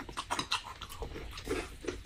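Close-miked chewing and lip-smacking of people eating: a run of irregular wet clicks and smacks, several a second.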